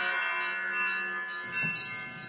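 Background music of chime-like ringing tones: several notes struck together at the start, left ringing and slowly fading.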